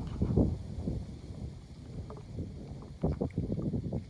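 Wind buffeting the microphone outdoors: an uneven low rumble, with a brief louder patch about three seconds in.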